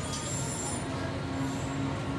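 Steady background noise of a shop interior: a low hum with a faint held tone over it and no sudden events.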